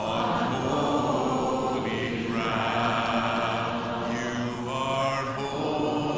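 A large congregation singing a hymn a cappella in parts, with slow, long-held notes.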